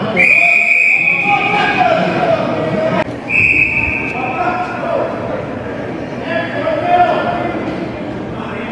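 Referee's whistle blown twice: a long blast of about a second and a half, then a shorter one about three seconds in, over shouting voices, with a sharp knock just before the second blast.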